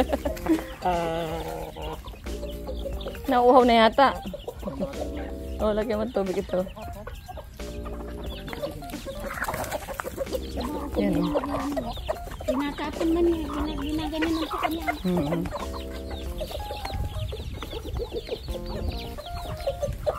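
Chickens clucking and calling as they feed, over background music with steady sustained chords.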